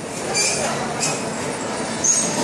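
Bumper cars running on the rink: a steady rumbling, scraping din of the cars, with short hissing squeals about half a second and a second in.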